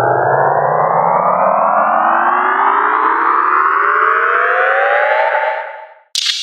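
Dubstep synthesizer riser: a thick stack of layered tones gliding steadily upward in pitch like a siren, building tension, then fading out in the last half second.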